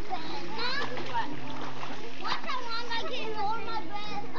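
Young children shouting and calling out in a swimming pool, with water splashing as they wade and swim.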